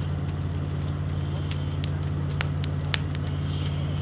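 Fire engine's motor running at the scene in a steady low drone, with a few sharp crackles and pops from the burning building about two to three seconds in.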